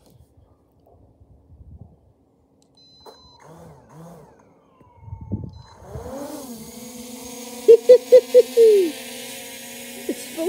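Holy Stone HS720 quadcopter's brushless motors spinning up about six seconds in, then running steadily with a propeller whir as the drone lifts off on one-key takeoff and hovers. Four short, loud pulses sound over the whir a little later.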